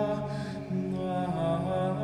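Choir singing Orthodox liturgical chant in slow, held chords, the chord changing about two-thirds of a second in and again just past a second later.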